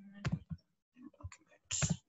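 A handful of short clicks and knocks from computer mouse and desk handling, the loudest a brief burst near the end.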